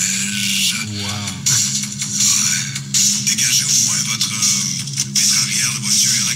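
Archived radio weather segment playing back: music with steady sustained low notes and a voice over it.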